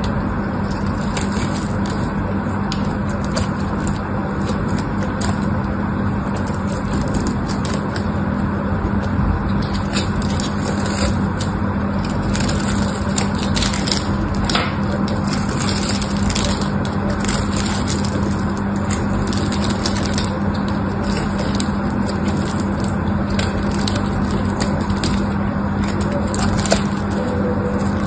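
Craft knife blade scraping and slicing into a dry bar of soap: a continuous crisp crackle of many small cuts as thin flakes and shavings come away.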